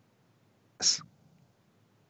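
A single short, sharp breath noise from the male host about a second in, a quick hissy burst like a sniff or a stifled sneeze.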